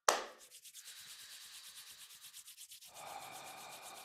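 Palms rubbed briskly together to activate and warm the hands for qi gong: a sharp clap at the start, then a steady rasping swish of about eight strokes a second, growing fuller about three seconds in.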